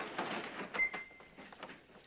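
Creaking and scraping as a heavy load is hoisted slowly by hand, with a short high squeak about a second in.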